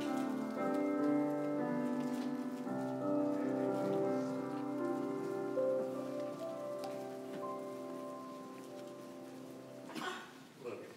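Keyboard music of slow, held chords that change every second or so and grow gradually quieter over the second half.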